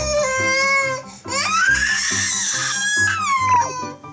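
A 14-month-old toddler crying in anger in two long wails, the second rising and then falling away, over background music with a steady beat.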